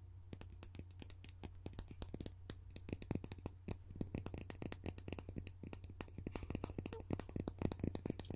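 Fingernails tapping and clicking rapidly on a small hard object held right against the microphone, an ASMR tapping trigger. The clicks come irregularly and grow denser after about three seconds, over a steady low hum.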